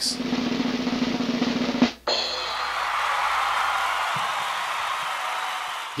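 A snare drum roll sound effect, rapid and steady, that stops sharply about two seconds in on a crash. The crash rings on and slowly fades through the rest.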